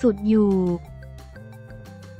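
A voice finishes a sentence in Thai over background music, ending on a drawn-out falling syllable under a second in. Soft background music with held tones and a light ticking beat then carries on alone.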